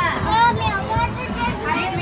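Children's voices chattering and calling out at play.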